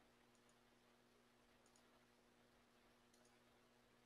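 Near silence: three faint computer-mouse double-clicks, about a second and a half apart, over a faint steady electrical hum.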